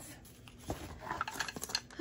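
Plastic paper-scoring board being handled and set down on a cutting mat: a soft knock about two-thirds of a second in, then a run of light clicks and taps.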